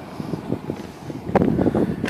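Wind buffeting the phone's microphone in an uneven low rumble, with one sharp click about one and a half seconds in.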